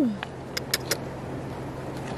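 Three light clicks in quick succession about half a second in, from fingers handling an opened freshwater pearl mussel's shell, over a steady low hum. A voice's falling exclamation trails off at the very start.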